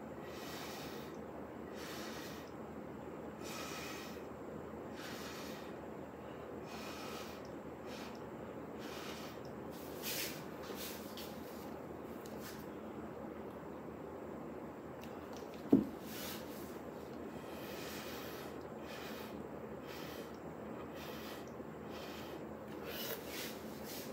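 Short, repeated puffs of breath blown through a stainless steel straw with a silicone tip onto wet acrylic paint, coming every second or two. A single sharp knock sounds about two-thirds of the way through.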